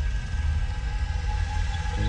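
Small car's engine running as the car drives slowly, a steady low rumble.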